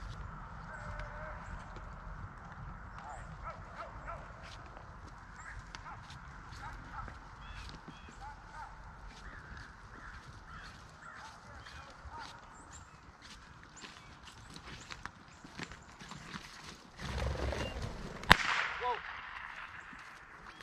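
Horses walking through dry grass, with faint distant voices and scattered faint calls. A few seconds before the end there is a louder, close rustling of feet in the grass, then one sharp crack, the loudest sound.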